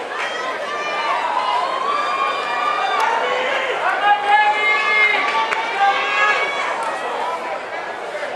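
Many overlapping voices of a stadium crowd chattering and calling out, none of it clear speech.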